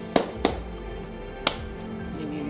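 Three sharp hand claps over steady background music, two in quick succession and a third about a second later: a sushi chef clapping his wet hands before shaping nigiri rice.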